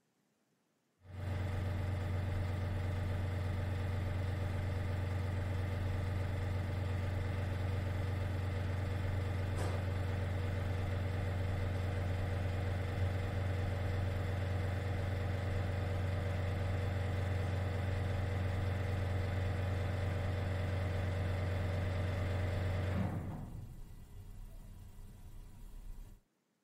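A building ventilation system's fan running: a steady low hum with several held tones, speeding up a little and rising slightly in pitch. Near the end it drops off suddenly and dies away as the fan stops.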